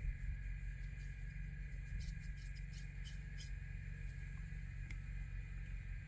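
Steady low background hum with a faint steady whine above it, and a few faint ticks.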